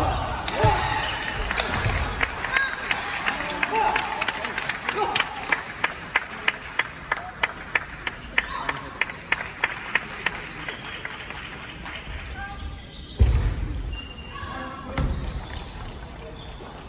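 Table tennis ball clicking in a quick, even run of bounces on table and bat, about two or three a second, in a large hall. A short vocal outburst comes right at the start and two louder bumps near the end.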